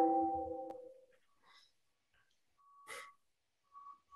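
A single chime: several steady tones sounding together, loud at the start and fading away over about a second. It is followed by faint clicks and a short, higher beep near the end.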